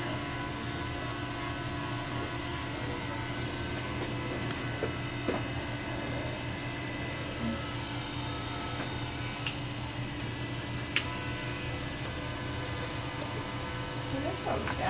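Electric hair clippers running with a steady buzz as short hair on the top of the head is cut over a comb. Two short sharp clicks come in the second half.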